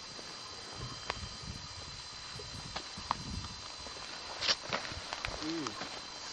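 Footsteps and stones knocking on rocky, gravelly ground: scattered light clicks and knocks over a steady hiss, the sharpest a little past the middle. A short bit of a voice comes near the end.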